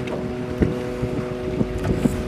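Steady low hum of a bass boat's motor, with wind buffeting the microphone and a few soft knocks.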